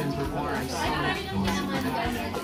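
Several people talking at once, indistinct party chatter, with music playing underneath.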